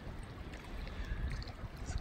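Wind on the microphone, a low steady rumble, with lake water lapping against shore rocks: an even rushing noise.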